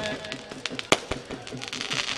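Firecrackers popping in a scattered run of small cracks, with one sharp, louder crack about a second in. Faint music plays underneath.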